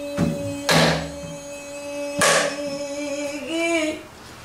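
A woman singing pansori, holding one long note that bends upward near the end, accompanied by three strokes on a buk, the pansori barrel drum, struck with a stick and the open hand.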